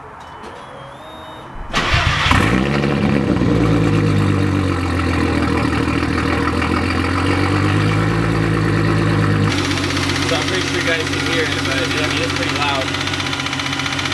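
Volkswagen VR6 car engine starting about two seconds in and running at idle, with a click that the owner puts down to something in the cylinder head rather than the bottom end.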